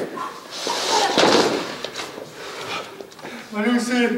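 A staged stage fight between actors: scuffling and a few sharp knocks, with a person's short vocal cry near the end.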